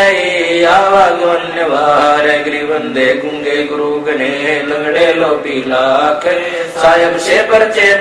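A man chanting devotional couplets in Hindi in a slow, melodic recitation, one long line after another with held notes bending up and down.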